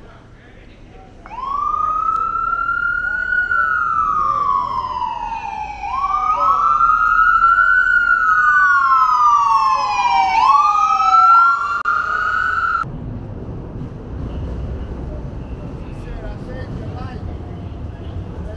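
Ambulance siren wailing, its pitch rising and falling slowly over a few seconds per cycle, with a second overlapping wail in the middle. It cuts off suddenly about 13 seconds in, leaving a low rumble of street traffic.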